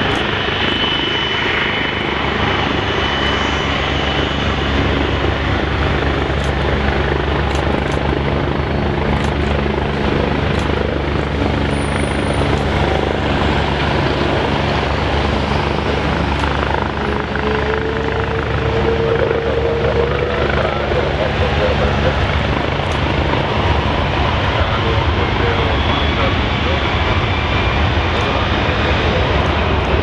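Jet engines of an Air Canada Airbus A330 as it rolls along the runway: a loud, steady engine noise with a low hum underneath.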